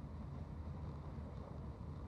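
Faint, steady low rumble and hiss of room tone, with no distinct events.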